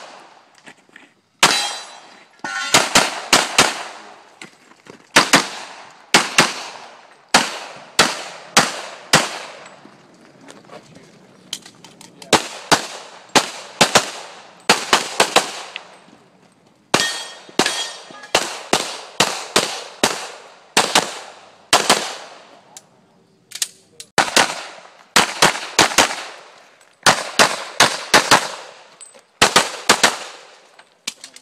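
Rapid semi-automatic pistol fire: strings of shots in quick pairs and clusters of three to five, each crack ringing briefly, with gaps of a second or two between strings, keeping up through the whole course of fire.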